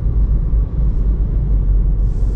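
Steady low rumble of road and running noise inside the cabin of a Citroën C4 driving at about 45 km/h, with no sudden sounds.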